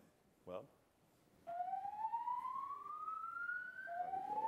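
Fire alarm sounding a slow whoop: one tone rising steadily in pitch over about two and a half seconds, then dropping back and rising again. It is silent at first and starts up about a second and a half in.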